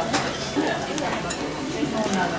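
A metal spoon clinking and scraping against a stone bibimbap bowl, with a few sharp clinks, over background voices.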